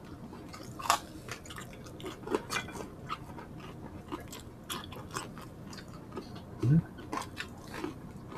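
Close-miked chewing and biting of crispy fried pork skin: irregular crunchy crackles. The sharpest crunch comes about a second in, and there is a short low sound near the end.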